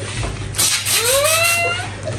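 Party snow spray hissing from aerosol cans in short spurts, and about halfway in a person's high-pitched, drawn-out yell that rises in pitch and then holds.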